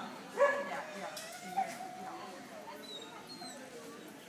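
A dog barks once, sharply, about half a second in, then gives a long, wavering whine.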